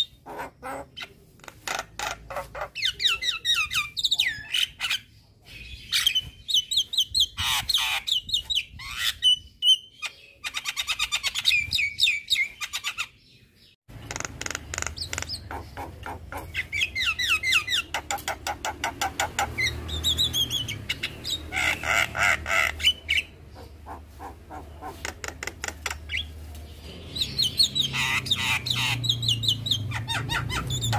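A young Javan myna singing a long, varied chattering song of rapid clicking trills and harsher squawks, broken by short pauses.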